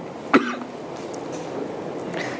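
A single short cough about a third of a second in, followed by the steady background hiss of the room.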